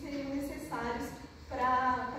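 Speech only: a woman talking, her voice rising and louder near the end.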